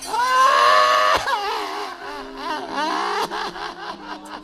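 A wayang kulit dalang's voice in character: a loud, drawn-out cry for about a second, followed by shorter wavering, warbling vocal sounds. Faint steady ringing tones of the gamelan sit underneath.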